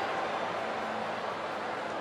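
Steady stadium crowd noise: an even murmur with no single sound standing out.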